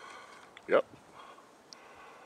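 A single short spoken "yep" about two-thirds of a second in, over a faint steady outdoor background; no other distinct sound stands out.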